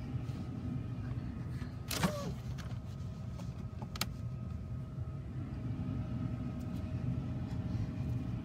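Steady low background rumble with a faint steady hum, broken by a few light clicks, the clearest about two seconds in and another about four seconds in.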